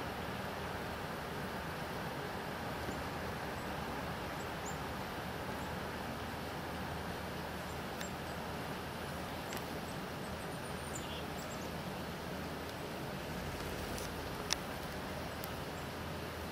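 Steady outdoor background noise, with a few faint, short, high chirps of small birds in the middle and a few sharp clicks, the loudest one near the end.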